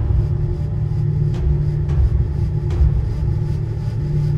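A deep, steady rumble with a low hum held underneath it and a few faint clicks.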